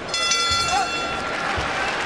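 Boxing ring bell ringing, fading out over about a second and a half, marking the end of a round, over steady crowd noise from the arena.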